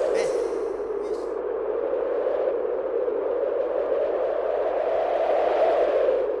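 Steady rushing, wind-like noise with no pitched notes, and a brief high hiss about a second in.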